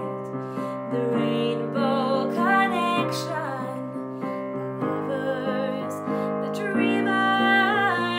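A woman sings with vibrato over her own digital piano accompaniment, holding sustained chords that change every half second or so. The voice comes through most strongly about two seconds in and again near the end.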